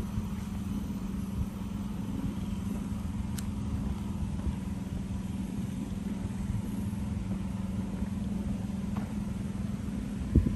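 A steady low hum over a low rumble, unchanging throughout.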